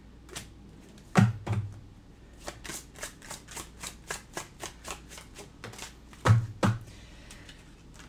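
A tarot deck being shuffled by hand: a run of quick, sharp card snaps at about four a second, with a few heavier knocks against the table about a second in and twice just after six seconds.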